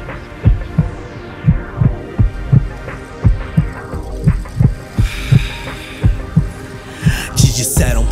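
Instrumental stretch of a hip-hop beat: deep kick-drum thumps in heartbeat-like pairs about once a second under a sustained hum of chords. High tones glide downward twice, and a bright noisy swell builds near the end.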